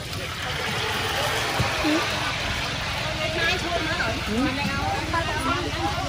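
Several people talking at a busy food stall, the voices overlapping, over a steady low rumble.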